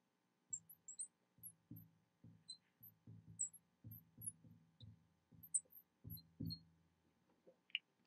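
Faint taps and tiny squeaks of a marker writing on a glass lightboard, stopping near the end.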